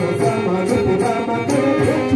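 Rama bhajan being sung: devotional group chanting with melody instruments over a steady jingling percussion beat of about three strokes a second.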